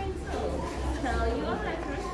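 Indistinct chatter of several young children's voices talking over one another, with a steady low hum underneath.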